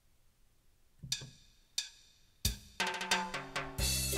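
Auto-accompaniment style from a Samick SG450 digital ensemble piano: two separate drum hits about a second in, then a full drum-kit rhythm with bass and chords starting about two and a half seconds in.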